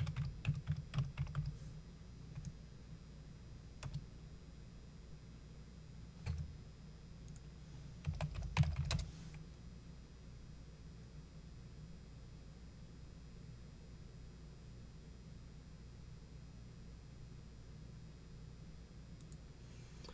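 Computer keyboard typing in a few short bursts of keystrokes over the first half, the loudest cluster a little before the middle, then only a faint steady low hum.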